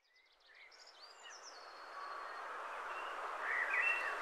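Small woodland songbird singing thin, high, quickly changing whistled notes over a hiss of outdoor background noise that fades in from silence and builds steadily.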